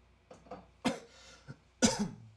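A man coughing hard after a dab hit of cannabis concentrate: a few short coughs, the two loudest about a second in and at the end.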